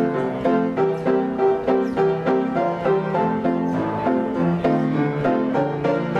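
Upright player piano playing a paper music roll: a lively tune of full chords struck in a steady, even rhythm, several notes a second.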